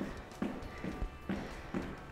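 Light, rhythmic thuds a little over twice a second: sneakers landing on a wooden floor during gentle in-place hops, like skipping without a rope. Faint background music runs underneath.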